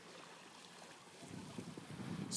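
Faint, steady outdoor hiss, with light wind on the phone's microphone.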